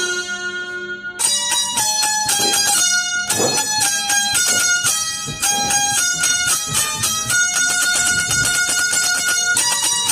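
Indian banjo (bulbul tarang) playing a melody: quick plucked metallic notes with held notes ringing under them. The fast run of notes starts about a second in, after a single ringing note.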